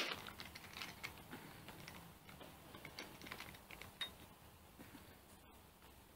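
Faint typing on a computer keyboard: irregular light key clicks, opening with one short louder burst.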